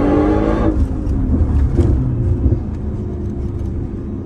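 Audi car engine heard from inside the cabin, revving up under acceleration with its pitch rising, then dropping away less than a second in to a steady low rumble.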